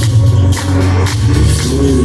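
Live rock band playing loud: electric guitar, electric bass and drum kit, with cymbal hits about twice a second over a heavy bass line.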